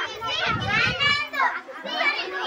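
Children's voices chattering and calling out at once, high-pitched and overlapping.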